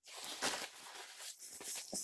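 Rustling of a black fabric carry bag being handled and turned over in the hands, cloth brushing and flapping with small irregular clicks.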